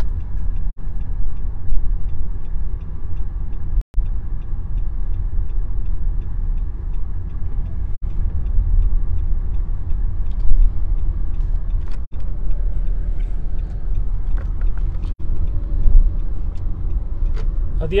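Steady low rumble of road traffic and wind on the microphone, heard while being carried along a road, broken by a few brief dropouts in the sound.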